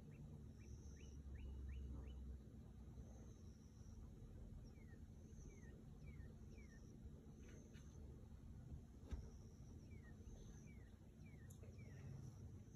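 Near silence with faint birdsong: quick series of short whistled notes, a run of rising notes at first, then falling slurs in groups of three or four. A single sharp click about nine seconds in.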